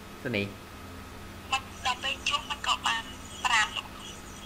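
Quiet speech: a voice saying a few short, soft syllables over a steady low hum.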